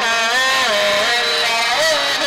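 A man singing a devotional naat into a microphone, drawing out long notes that glide and bend in pitch between the lines of a repeated "Allah" chant.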